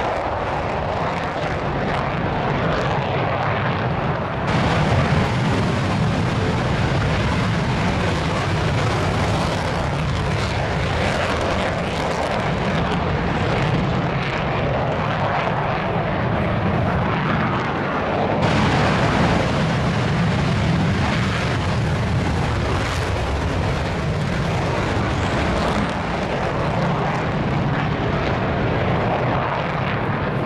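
JASDF F-15J fighter's twin jet engines in afterburner during a climb-out, a loud, steady jet roar with deep rumble. The sound shifts abruptly about four and a half seconds in and again about eighteen seconds in.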